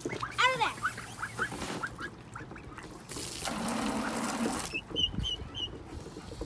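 Young domestic ducks quacking: one loud quack, then a quick run of short quacks. After that comes a second and a half of rushing noise, and near the end a few short high peeps.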